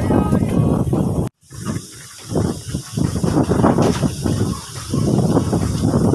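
Strong wind buffeting the microphone in uneven gusts, a loud low rumble with a hiss above it, broken by a brief silent gap about a second in.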